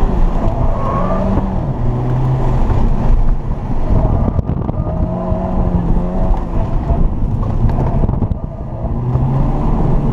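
Volkswagen's engine heard from inside the cabin on an autocross run, revving up and down as the car accelerates and slows between cones, over steady road and wind noise. The engine note drops briefly about eight seconds in, then picks up again.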